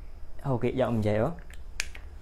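A man speaking for about a second, then a single sharp click near the end.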